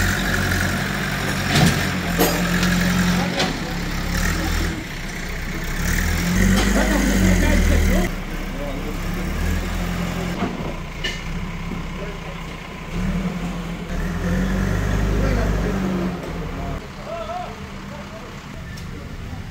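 Diesel engine of a backhoe loader running, its low drone swelling for a couple of seconds at a time as it works, with a few short knocks mixed in.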